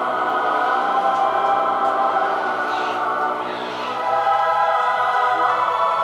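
Choral music with a choir holding long sustained chords, easing off briefly a little past the middle before swelling again.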